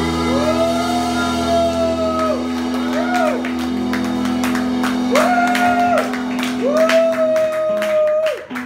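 Live country band holding its closing chord while voices whoop over it in several long 'woo' calls. Scattered clapping starts about halfway through.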